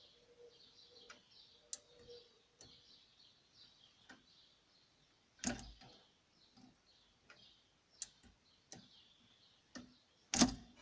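Near silence broken by faint scattered clicks and one louder knock about five and a half seconds in, from the metal lever, tension spring and microswitch of a DIY electric steering-wheel clutch mechanism shifting.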